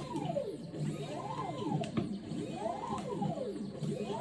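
Stepper motors of a 3D-printed robot arm whining as its joints move. The pitch rises and falls again and again as each move speeds up and slows down, with several of these sweeps overlapping.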